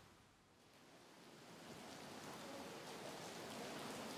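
Faint steady rain, an even soft hiss that fades in after about a second of near silence and slowly grows.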